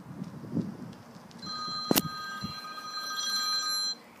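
An electronic ringing tone, several steady pitches at once, starts about a second and a half in, with one sharp click partway through, and cuts off abruptly just before the end.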